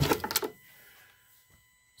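A battery charger's power plug pulled from its outlet: a quick burst of clicks and rattles in the first half second, then near silence.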